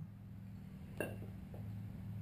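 A screwdriver clicking once against metal about a second in, prying the inner oil seal out of a Showa motorcycle fork's outer tube, with a couple of faint ticks after it over a low steady hum.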